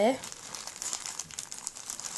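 Clear plastic zip bag of dried herbs crinkling as a hand squeezes and turns it: a steady fine crackle with many small ticks.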